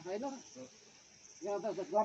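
A person speaking, with a pause of about a second in the middle, over a faint steady high hiss.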